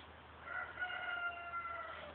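A faint, drawn-out call held at one pitch. It begins about half a second in, lasts about a second and a half and dips slightly at the end.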